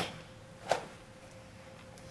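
A single sharp slap of contact about two-thirds of a second in, as one karateka meets the other's punch with a rising forearm block, over a faint steady hum.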